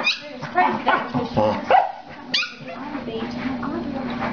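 A dog yipping and barking in play, a quick string of short high yips in the first couple of seconds, then quieter.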